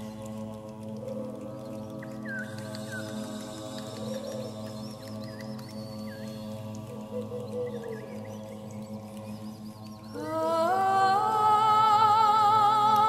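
Choral music: a steady, sustained hummed chord with faint sliding tones drifting over it. About ten seconds in, louder voices come in singing, climbing step by step in pitch.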